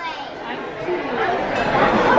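Many overlapping voices chattering in a busy restaurant dining hall, with no single voice standing out; the babble grows louder through the second half.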